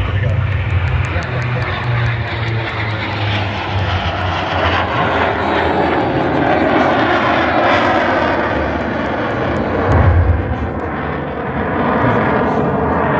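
Yak-110 aerobatic aircraft, two Yak-52 airframes joined with a jet engine between them, flying its display overhead: continuous aircraft engine noise that swells and fades as it manoeuvres, loudest about ten seconds in.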